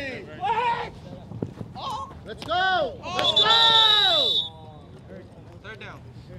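Men's voices shouting and calling out across the field during a flag football play, in several loud yells. One long call about three seconds in has a steady high tone over it.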